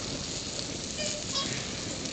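Fire burning on a silicone-coated plastic chair: a steady hiss of flames with fine crackling.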